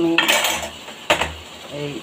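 A metal utensil scraping and clinking against a cooking pan of simmering curry, with a sharp knock about a second in.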